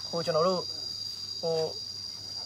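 Insects trilling in one steady high-pitched tone, under two short fragments of a man's voice.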